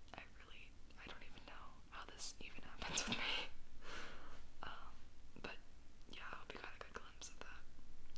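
A woman whispering close to the microphone, breathy and unvoiced, with scattered small clicks between the words.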